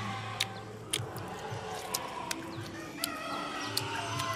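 A rooster crowing faintly about three seconds in, over scattered soft clicks from chewing.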